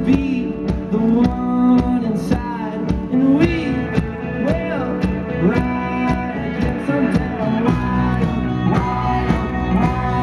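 A live indie rock band playing: electric guitars, bass guitar and drum kit, with bending melodic lines over a steady beat. The bass and drums grow fuller about three-quarters of the way through.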